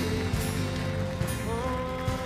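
Live worship band music with long held notes; one note slides up about one and a half seconds in.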